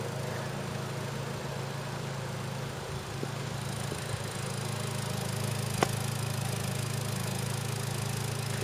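2011 Hyundai Sonata's engine idling with a steady low hum, heard from behind the car. A single sharp click comes about six seconds in.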